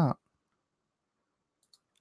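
A spoken word trails off at the start, then near silence broken by a couple of faint, short clicks near the end: computer mouse clicks.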